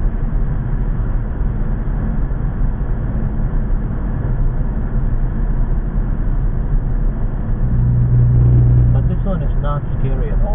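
Steady road and engine noise of a car driving through a road tunnel, heard from inside the cabin. A louder low hum swells for about a second near the end.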